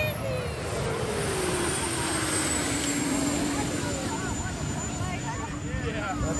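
Jet turbine on a golf cart, running with a whine that falls in pitch over the first few seconds and then holds steady, over the chatter of a grandstand crowd.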